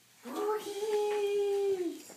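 A baby's long, drawn-out vocal cry of excitement: one steady held note that slides up at the start and drops away at the end.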